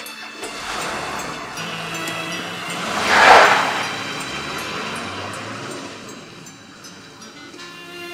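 An SUV drives past close by: its engine and tyre noise swells to a loud peak about three seconds in, then fades away.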